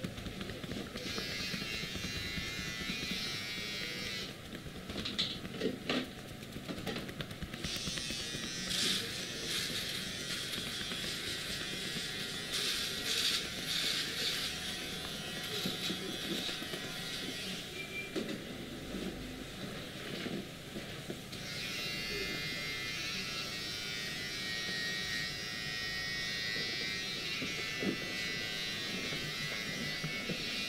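Hands rubbing, pressing and kneading a man's back through a cotton hoodie during a massage: fabric rustling and brushing, with stronger surges of rubbing now and then.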